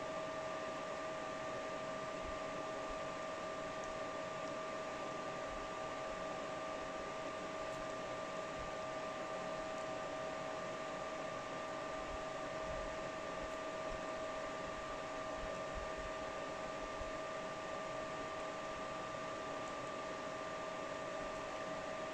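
Cooling fans of a GPU mining rig running at high speed under mining load: a steady airflow hiss with a constant, unchanging whine in it.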